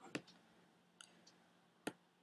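Computer mouse button clicking as pen-tool anchor points are placed: a sharp click just after the start, a fainter one about a second in, and another sharp click near the end, with near silence in between.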